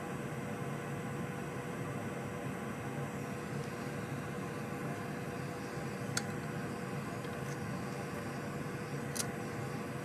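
An electric blower on the repair bench running steadily: an even hiss of moving air with a constant hum. Two faint clicks come about six and nine seconds in.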